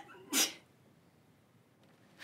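A woman crying: one short, sharp sobbing breath a little under half a second in.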